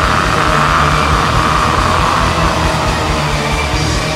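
Black metal song in an instrumental stretch: a dense wall of distorted guitar over fast, even drumming, at a steady loud level with no vocals.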